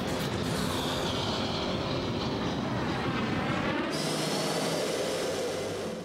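Steady jet engine noise from F/A-18 Hornet fighters, its tone changing abruptly about four seconds in.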